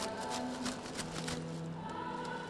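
Clear plastic bag crinkling as it is pulled off a folded inflatable goal, over background music with held notes.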